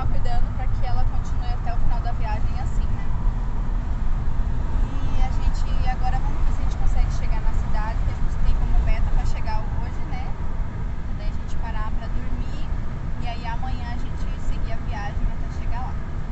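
Steady low rumble of road and engine noise inside the cabin of a moving car, with a woman's voice heard over it.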